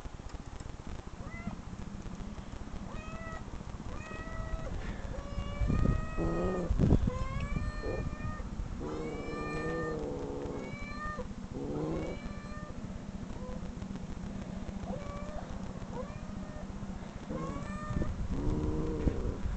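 Recorded cat meows played through computer speakers, one meow after another with short gaps. Two low thumps come about six and seven seconds in.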